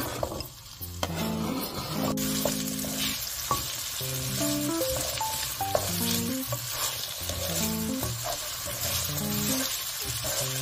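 Diced potatoes sizzling as they fry in a hot non-stick pan, stirred with a wooden spatula; the sizzle grows fuller about two seconds in. Soft background music plays under it.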